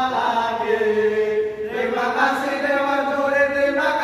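Male voices chanting an Islamic devotional song (sholawat) in unison, with long held notes and a flowing melody.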